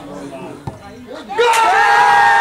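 A football struck for a penalty kick, a single thud about two-thirds of a second in, over faint spectator chatter. From about 1.4 s a loud, long held shout goes up as the goal is scored.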